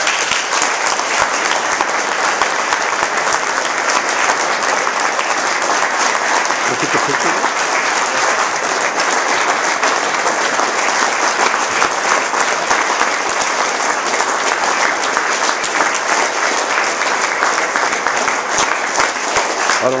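An audience applauding: many hands clapping steadily, starting suddenly as a thank-you speech ends.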